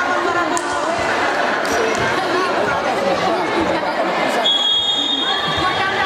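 Players and spectators calling out and chattering in a large sports hall during a volleyball rally, with a few sharp hits of the ball. Near the end a referee's whistle blows one steady high note for about a second and a half.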